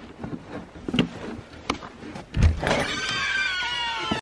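A door being opened: a few sharp clicks and a low thump, then a long, high squeak that falls slightly in pitch, typical of a creaking door hinge.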